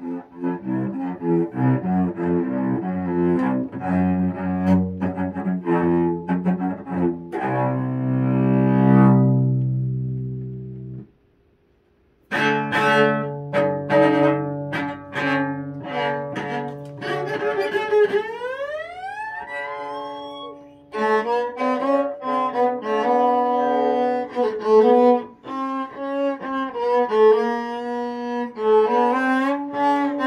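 A cello bowed note by note: a run of short notes, then one long held note that fades away. After a break of about a second, more bowed notes follow, then a slow upward slide in pitch and another run of notes.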